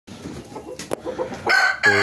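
Rooster crowing, a loud held call that starts about one and a half seconds in. Before it there is faint clucking and a single sharp click.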